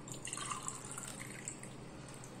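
Liquid trickling and dripping from a small steel tumbler into a glass of liquid, faint and uneven, easing off after about a second and a half.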